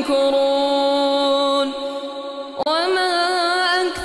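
Man reciting the Quran in melodic tajweed style, holding one long vowel on a steady pitch, then breaking off about two and a half seconds in and starting a new phrase that rises in pitch.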